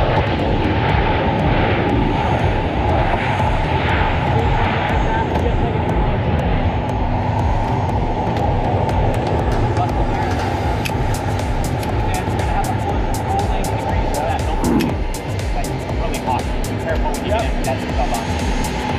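Loud, steady aircraft engine noise, with a steady hum joining about six seconds in.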